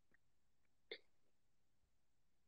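Near silence: room tone, with one faint, short mouth sound from the speaker about a second in.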